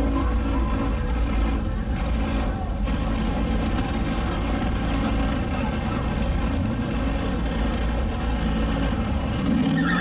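A car's engine and exhaust running with a steady deep rumble.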